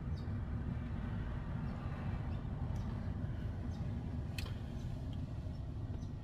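Steady low rumble of background noise inside a parked car's cabin, with two faint clicks about three and four and a half seconds in.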